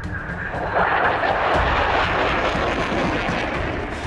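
F-22 Raptor's twin Pratt & Whitney F119 jet engines heard as the fighter flies overhead: a loud rushing noise that swells about a second in, holds steady, then eases slightly near the end.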